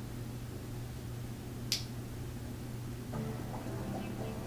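A steady low room hum with a single sharp click just under two seconds in, a fingernail catching on a paper price sticker as it is slowly picked off a comic book cover. Faint background music comes in near the end.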